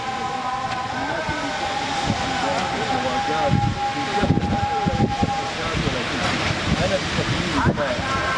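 Construction-site machinery running with a steady whine that stops about five and a half seconds in, under men's conversation and a steady background rumble.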